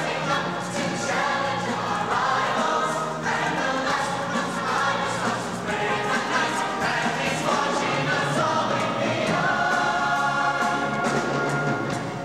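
High school show choir of mixed male and female voices singing a number in full voice.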